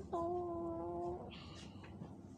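A child's voice holding one long, even note for about a second, drawn out at the end of a spoken phrase, followed by a short hiss.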